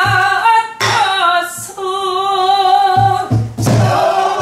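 A woman singing a Korean sinminyo (new folk song) in a strong, wavering voice, accompanied by low strokes on a buk barrel drum beaten with a wooden stick, several of them close together near the end.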